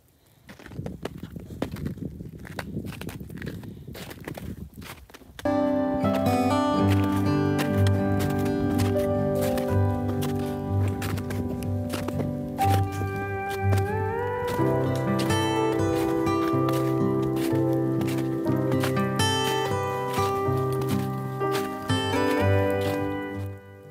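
Footsteps on packed snow from hikers wearing traction spikes, irregular and uneven, for about five seconds. Then background music cuts in suddenly and takes over, with held notes that change in steps over a repeating bass line.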